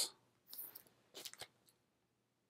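Faint, brief rustles and a small click from a red vinyl LP and its sleeve being handled and tilted in the hands.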